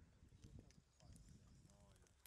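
Very faint outdoor ambience: distant, indistinct voices over a low rumble, with a few light clicks.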